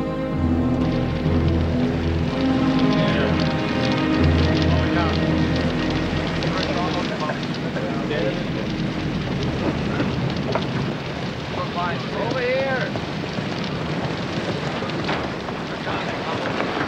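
Film soundtrack: sad orchestral music fades out over the first several seconds. It gives way to a steady rushing wash of sea and wind, with distant men shouting now and then.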